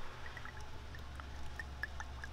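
Old fuel dripping from the outlet of a used automotive fuel filter onto a shop towel: faint, scattered small drips over a steady low hum.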